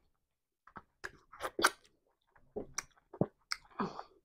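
Close-miked chewing of soft amala in tomato sauce, in irregular short bursts with brief pauses between.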